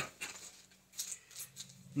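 A few faint short clicks and rustles of plastic lure packaging being handled and lifted out of a cardboard shipping box.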